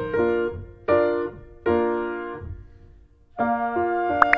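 Background piano music: chords struck about once a second and left to ring and fade, with a short lull before the next chord near the end.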